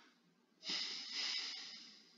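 A person exhaling close to the microphone: one breathy rush that starts about half a second in and fades away over a second or so.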